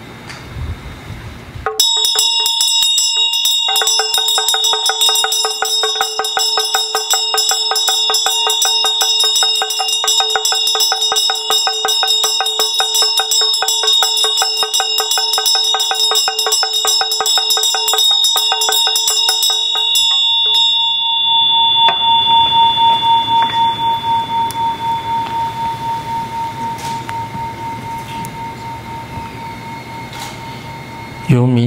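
A Tibetan Buddhist vajra bell and damaru hand drum are shaken together, a rapid rattle of strikes over the bell's steady ringing, starting about two seconds in. The rattle stops after about twenty seconds, and the bell rings on alone, its tone wavering as it slowly fades.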